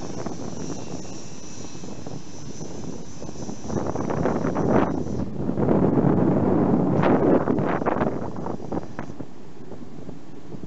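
Boeing 787-9 taxiing on low engine power, a steady jet hiss with a thin high whine that fades out about five seconds in. From about four seconds in, wind buffets the microphone in irregular gusts that are the loudest sound, dying down near the end.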